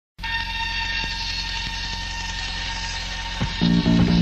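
Lo-fi demo-tape recording of a rock band opening its song: a steady droning tone over a low hum. About three and a half seconds in, a hit and pitched bass notes come in and the band starts, louder.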